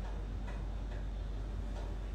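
Faint, regular ticking, a little over two ticks a second, over a steady low hum.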